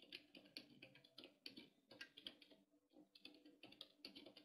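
Faint typing on a computer keyboard: irregular quick key clicks, several a second, over a low steady hum.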